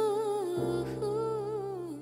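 Closing bars of a Vietnamese TV-drama theme song: a wordless hummed vocal line with wide vibrato sings two slow, falling phrases over a held low accompaniment, fading as the song ends.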